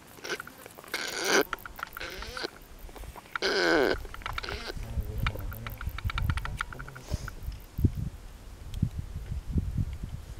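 Close-up sounds of baboons grooming: a run of small quick clicks from lip-smacking and picking. Two louder vocal sounds stand out, one about a second in and a longer one, falling in pitch, between three and four seconds in. A low rumble fills the second half.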